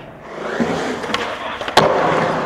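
Skateboard wheels rolling on concrete, then two sharp clacks of the board about half a second apart near the end, the second the louder.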